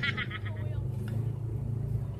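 A man laughing, the laugh trailing off about half a second in, followed by a steady low hum.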